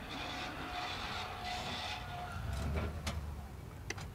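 A travel trailer's electric stabilizer jack motor running, a faint steady whine for about two seconds, then a low rumble.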